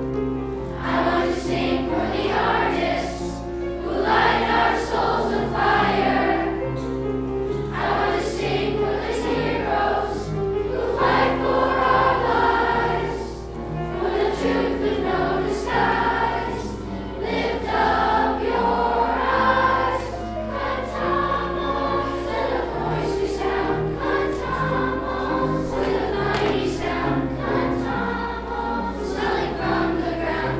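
A large children's choir singing in unison and harmony, accompanied by a piano.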